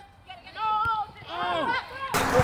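Voices calling out: two drawn-out shouts, the second rising and falling in pitch.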